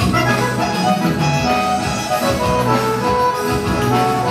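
Piano accordion playing a lively forró tune in sustained chords and melody, over a steady rhythmic beat.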